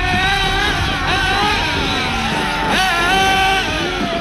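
Radio-controlled drift car's motor whining, its pitch rising and falling with the throttle, with a sharp rise nearly three seconds in before it holds steady, over a low rumble.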